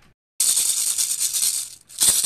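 Plastic baby rattle shaken rapidly, a dense rattling of small beads that starts suddenly about half a second in and breaks off briefly near the end.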